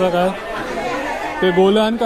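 A person talking with the background chatter of a busy indoor market hall; the talk breaks off for about a second in the middle, leaving the crowd murmur.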